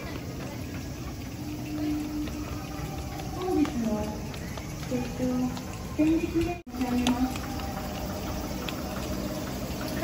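Short, scattered voice sounds over a steady background hiss of outdoor ambience. The sound drops out for an instant about two-thirds of the way through.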